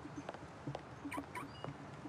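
High-heeled shoes clicking on paving stones in a quick, regular walking rhythm, with two short high squeaks just past halfway.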